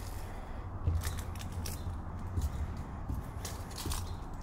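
Footsteps crossing a wooden footbridge strewn with dry leaves: dull thuds on the boards with short, sharp crackles of leaves underfoot.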